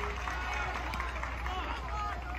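Indistinct distant voices and chatter, with no words made out, over a steady low hum.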